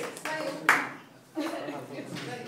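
The tail of a round of hand clapping: a few scattered claps, one sharp clap near the middle, then a short lull and people talking.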